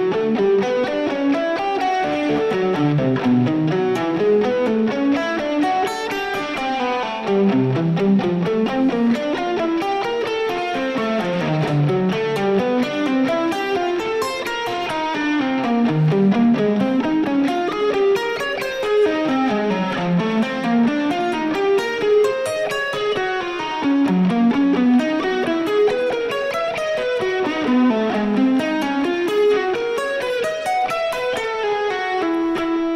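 Electric guitar playing a steady picked study of arpeggiated fourths and triads, a continuous run of single notes climbing and falling in repeating waves.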